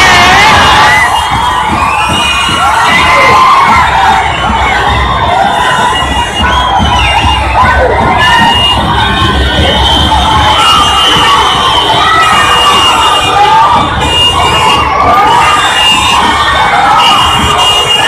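Large crowd cheering and shouting, many voices at once, loud and unbroken.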